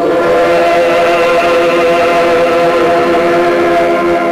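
Male voices holding one long, steady final chord of a Ukrainian folk song, the pitch unchanged throughout.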